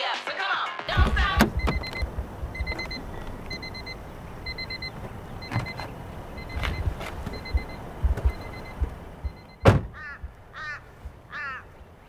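Car stereo music cuts off about a second in, then a car's door-open warning chime dings about every half second while the door stands open. The car door is shut with one loud thunk near the end, followed by a crow cawing twice.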